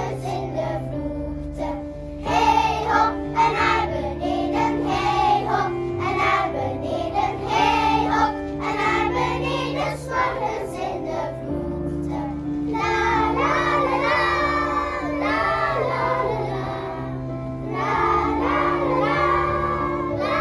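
Children's choir singing in unison over an instrumental accompaniment with steady held bass notes. The singing grows fuller in the second half.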